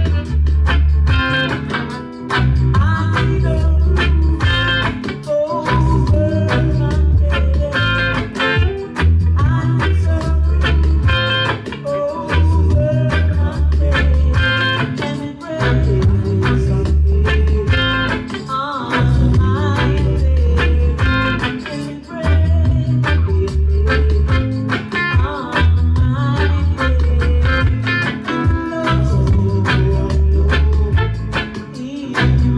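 Roots reggae music with a deep, pulsing bassline and singing, and a hollow-body electric guitar playing rhythmic chord strokes along with it.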